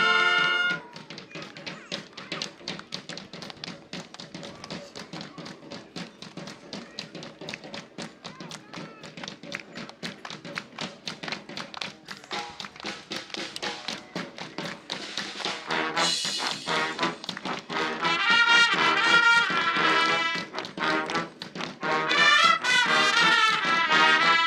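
A marching band's held brass chord cuts off about a second in, leaving a quieter rhythmic percussion groove. About two-thirds of the way through, the full band of brass and saxophones comes back in loud.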